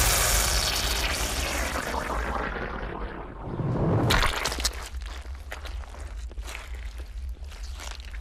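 Sound-effect track for slow-motion footage: a spraying, shattering hiss that fades over about two seconds, then a whoosh, then a run of small sharp crackles.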